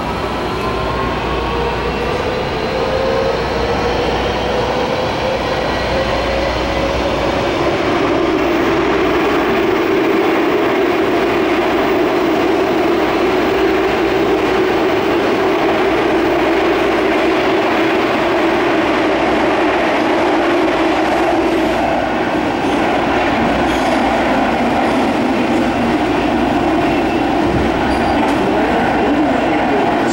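MARTA rapid-transit rail car heard from inside the passenger cabin. A motor whine rises in pitch over the first several seconds as the train gathers speed, then gives way to the steady rumble and hiss of the car running at speed on the rails.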